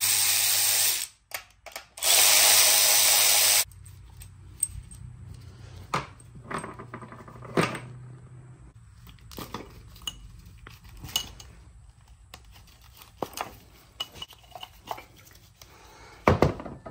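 Cordless electric ratchet spinning out ignition-coil hold-down bolts in two short runs, about a second and then about a second and a half long, followed by scattered light clicks and knocks as the coils are worked loose and lifted out.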